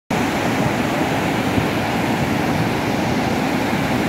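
A river in flood, thick with mud, rushing past steadily and loudly.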